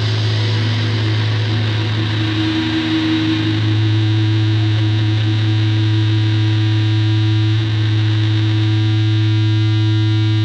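Sustained distorted electric-guitar drone through the amplifiers: a steady low hum with a higher ringing tone that comes in a couple of seconds in and holds.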